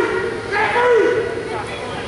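Voices of spectators and coaches calling out in a reverberant gym, with one raised voice about half a second in; no words are made out.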